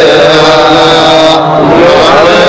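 Men's voices in a melodic religious chant, the pitch held on long notes and wavering and sliding between them.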